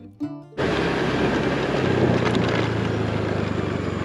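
Background guitar music ends in the first half-second. Then a motorcycle engine cuts in abruptly, running steadily with a low hum under heavy wind and road noise as the bike rides along.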